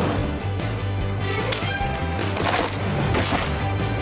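Cartoon score music with a wood-cracking sound effect, twice, as a tree topples across the road.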